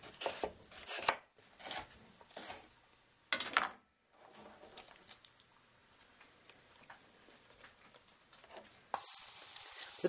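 A kitchen knife slicing a red bell pepper into strips on a wooden cutting board, a run of sharp strokes over the first few seconds, the loudest about three and a half seconds in. About nine seconds in, bacon frying in a pan starts to sizzle, a steady hiss.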